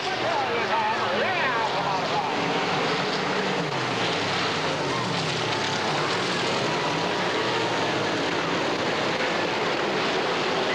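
Several dirt late model race cars' V8 engines running hard in a steady din, their pitch rising and falling as the cars pass through the turns. Spectators' voices are heard near the start.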